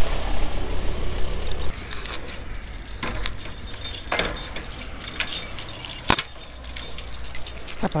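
A bunch of keys jangling and clinking as a key is worked in the padlock of a metal gate, with several sharp metallic clicks and clanks, the loudest about six seconds in. For the first couple of seconds there is a low steady hum of an idling car engine.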